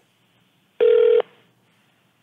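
A single short electronic beep over a telephone line, a steady tone lasting under half a second, about a second in; it comes as the call is handed to a live operator.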